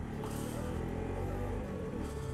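Motorcycle engine running steadily while riding in traffic, with music faintly underneath.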